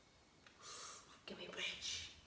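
A woman whispering softly: a breathy sound about half a second in, then a few murmured syllables near the end.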